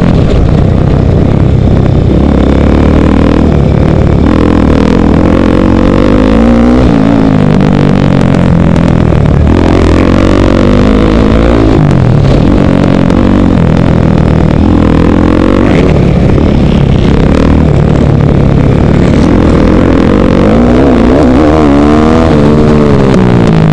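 KTM 450 supermoto's single-cylinder four-stroke engine, heard from the rider's helmet camera and very loud, its pitch rising and falling again and again as it is revved hard, shifted and backed off under racing load.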